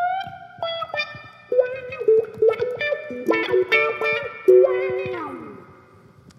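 Electric guitar playing an expressive single-note lead line through a wah pedal, the pedal rocked to give a voice-like tone. A bent note opens it, and a slide down about five seconds in ends the phrase, which then fades.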